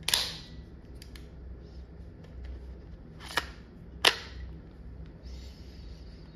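A CO2 less-lethal marker being loaded and readied. A sharp pop with a short hiss trailing off comes first, then about three seconds later two sharp clicks under a second apart.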